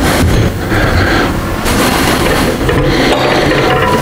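Loud rustling and bumping from a body-worn microphone rubbing against clothing as the wearer walks.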